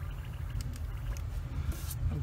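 Airbrush air compressor running with a steady low hum, with a few small handling clicks and a brief high hiss near the end.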